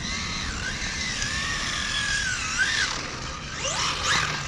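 Battery-powered Kyosho Charger RC car's electric motor whining as it is driven, the pitch wavering with the throttle. Near the end it sweeps up and down in pitch as the car accelerates and backs off.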